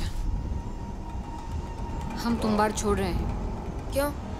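Film trailer soundtrack: a low rumble with a faint sustained tone under it, and a short spoken line about two seconds in.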